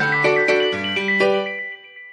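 Background music: a melody of ringing, pitched notes that ends about a second and a half in, its last notes fading away.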